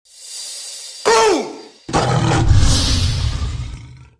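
Logo-sting sound effects: a rising whoosh, then a tiger-roar effect that starts with a growl falling in pitch about a second in and goes into a louder, rumbling roar that fades out near the end.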